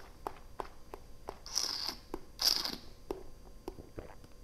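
Mouth sounds of a person tasting a mouthful of red wine: small wet lip and tongue smacks throughout, and two short hissing breaths of air about a second and a half and two and a half seconds in, the second the louder.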